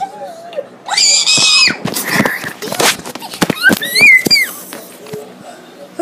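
A child giving two loud, very high-pitched squeals, the second rising and falling, with a run of sharp knocks between them.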